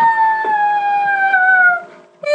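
A child's voice holding one long, high howl that slides slowly down in pitch and breaks off near the end, with a couple of faint knocks under it.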